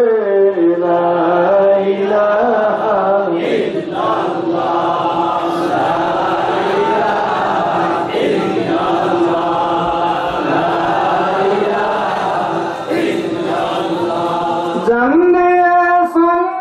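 Men chanting: a single male voice at first, then a crowd of men chanting together in unison from about three seconds in, before a single voice carries on alone near the end.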